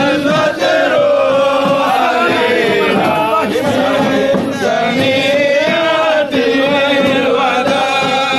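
A large group of men chanting together in unison, loud and continuous, with long held notes that slide up and down in pitch; a devotional chant sung in welcome.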